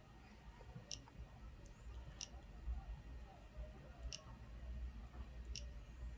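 Four short, sharp clicks a second or two apart from fingertip presses on a TFT24 touchscreen display as its menus are tapped through, over a faint low hum.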